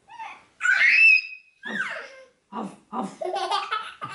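A six-month-old baby laughing: a loud, high squeal about a second in, then a run of quick, short giggles toward the end.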